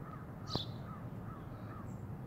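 Birds calling outdoors: a short high call falling in pitch about half a second in, over a run of soft chirps repeated a few times a second.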